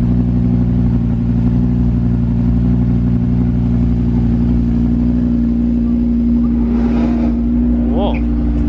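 Audi R8's V10 engine idling steadily at the rear exhaust, a low, even note that holds its pitch, without revving.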